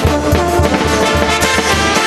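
Peruvian brass band (banda de músicos) playing a huayno: trombones and saxophones carry the tune over a pulsing tuba bass line, with bass drum and cymbals.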